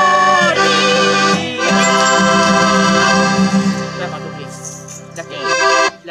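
Folk band music led by an accordion, with acoustic guitar, playing the closing bars of a tune. The sound thins out after about four seconds, then a final full chord stops abruptly near the end.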